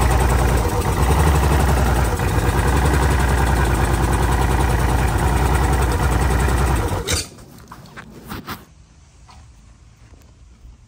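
Mercury 250XS V6 two-stroke racing outboard running at idle with a misfire, two of its cylinders not firing. It shuts off suddenly about seven seconds in, followed by a few faint clicks.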